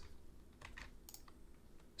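A few faint, scattered keystrokes on a computer keyboard as code is typed.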